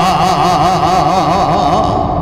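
A man's voice chanting a Quranic verse in melodic recitation style, holding one long note that wavers up and down in quick ornamental turns.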